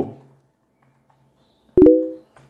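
A short electronic chime: a click followed by a ringing tone of a few pitches that fades over about half a second, near the end, an edited-in effect as a caption appears.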